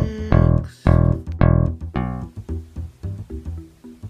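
Intro music: four heavy, low notes about half a second apart in the first two seconds, then softer, quicker notes that fade off.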